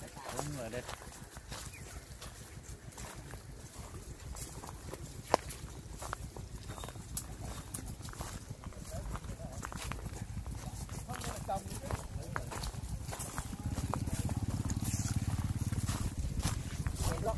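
Footsteps crunching and snapping on dry leaf litter and twigs as people push through brushy undergrowth, with irregular small clicks and one sharp crack about five seconds in. A low rumble swells near the end.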